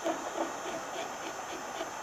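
Wagner HT1000 heat gun's fan blowing steadily, with faint irregular scratching and crackling as a carbide scraper works the heat-softened paint on the wooden hull.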